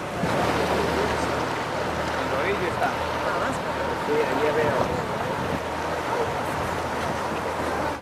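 Steady wash of sea water and waves, with wind on the microphone and faint distant voices in the middle.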